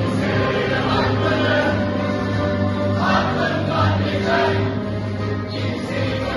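Music with a group of voices singing together in chorus, loud and steady throughout.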